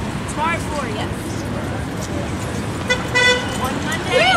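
Steady street and traffic noise with a low murmur of crowd voices, and a short vehicle horn toot, one flat tone, about three seconds in.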